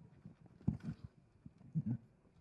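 Handheld microphone handling noise: faint, irregular low bumps as the mic is picked up and moved.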